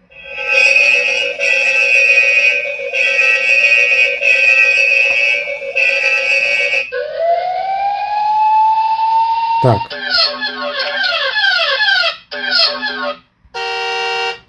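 The Unihertz 8849 Tank 2 smartphone's loudspeaker plays a run of its built-in alarm and siren sounds, each cut off as the next is picked. First comes a steady electronic alarm tone with short breaks about every second and a half. Then comes a siren wail rising in pitch. Last come fast, repeating, downward-sweeping police-siren yelps in two short bursts.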